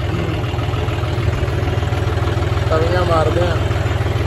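Tractor diesel engine running steadily at a constant low speed, with no change in pitch.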